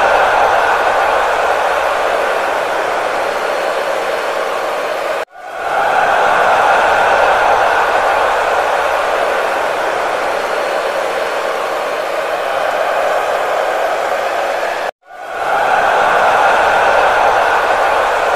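Steady crowd and ground ambience from a cricket match broadcast, an even hiss-like noise with no distinct voices. It is broken by two short silences, about five and fifteen seconds in, and fades back up after each.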